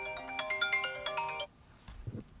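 Electronic phone ringtone-style melody of short, steady notes while a call is being connected; it cuts off about a second and a half in.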